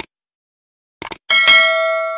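Subscribe-button sound effects: a mouse click, then two quick clicks about a second in, followed by a bright notification-bell ding that rings on and slowly fades.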